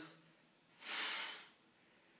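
A single short, hissing breath of about half a second, about a second in: an exhale timed to the dumbbell pullover.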